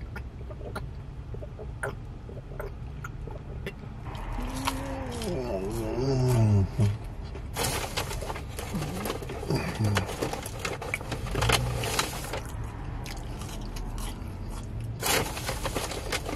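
Swallowing from a plastic water bottle, heard as small clicks, then a drawn-out hummed "mmm" that wavers in pitch about five seconds in. It is followed by rustling and handling noises, over a steady low hum of the car cabin.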